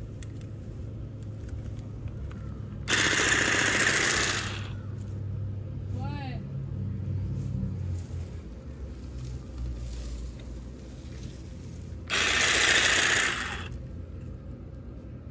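Cordless hedge trimmer run in two short bursts, each about a second and a half, its reciprocating blades buzzing as they cut through woody lavender stems.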